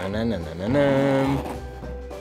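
A man's voice drawing out a long held note, suspense-style, over background music, while the zipper of a hard-shell case is pulled open.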